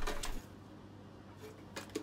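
Faint handling of computer ribbon cables and power leads inside a metal PC case, with a short click just before the end.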